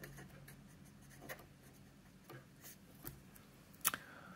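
Marker pen writing on paper: faint, scratchy strokes, with a sharper click near the end.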